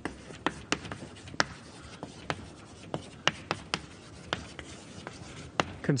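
Chalk writing on a blackboard: a string of sharp, irregular taps and strokes as letters are written.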